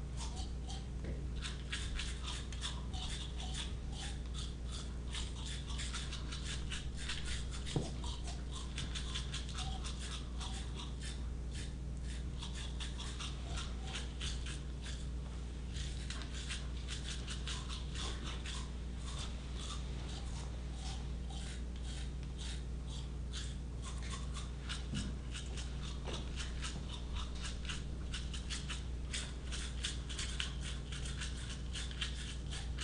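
Three toothbrushes scrubbed against teeth in a performed trio, a dense run of rapid scratchy bristle strokes. The brushing is pitched, shaped by each player's mouth into high, medium and low tones.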